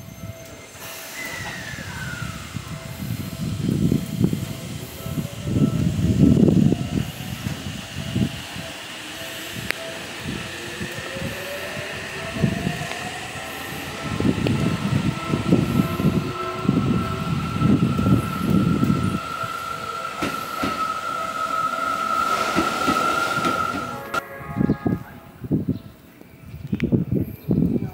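Seibu 6000-series electric train pulling out, its SiC-VVVF inverter whining in a rising pitch as it accelerates over the rumble of the wheels. A steady high tone holds through the second half, and the sound drops away near the end.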